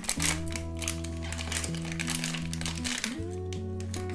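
Thin plastic blind-box bag crinkling as hands tear it open and pull out a small vinyl figure, over background music with steady held notes.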